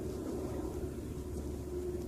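Faint outdoor background noise with a thin, steady hum running underneath.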